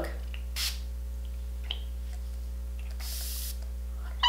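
Pump-bottle facial setting mists spritzing: a brief spray about half a second in, then a longer, fuller spray of about half a second about three seconds in, over a steady low electrical hum.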